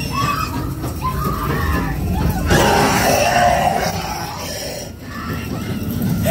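A person screaming loudly for about a second and a half, starting about two and a half seconds in.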